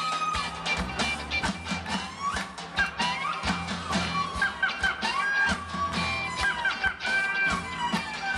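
Live band playing Turkish Roma dance music. A clarinet carries a fast melody full of slides and bent notes over a beat from a bass drum (davul) and drum kit, with electric guitars beneath.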